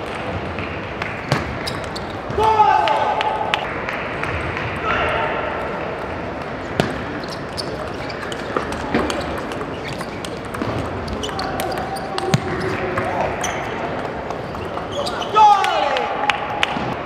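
Table tennis ball clicking off rackets and the table during serves and rallies, a quick irregular series of sharp ticks. Loud shouts with falling pitch cut in about two to three seconds in and again near the end.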